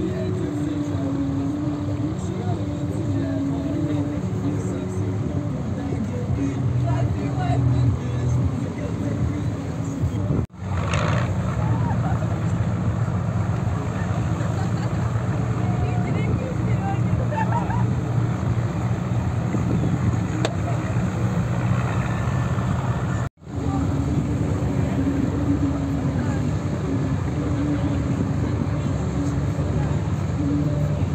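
Steady low rumble of a river tour boat's engine and wind on the open deck, with music playing over it. The sound cuts out briefly twice.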